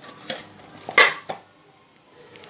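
Stainless steel mixing bowl knocking and clanking as wheat dough is kneaded in it by hand: about three short knocks, the loudest about a second in.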